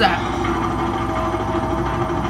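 A steady low hum from the playing episode's soundtrack, with a higher held tone joining about halfway through.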